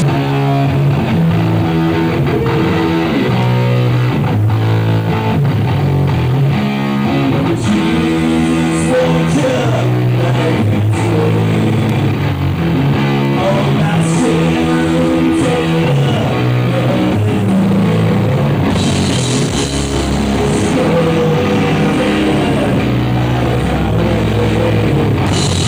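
Stoner rock band playing live: heavy electric guitar riff over a drum kit, with cymbals crashing in at several points.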